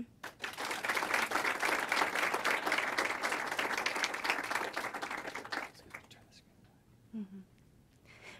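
Audience applauding: many hands clapping for about five and a half seconds, then dying away.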